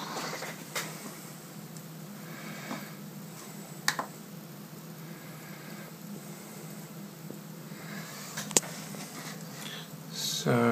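A few sharp, isolated computer mouse clicks, the clearest about four seconds in and near the end, over a steady low room hum.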